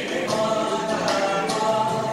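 Indian folk music: a group of voices singing over drum beats, about two a second, the soundtrack of a Dhol Cholom drum-dance film playing on an exhibit screen.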